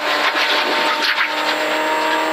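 Ford Fiesta V1600 rally car's 1.6-litre engine pulling hard at high, steady revs, heard inside the cabin. It is under gravel noise from the tyres and underbody.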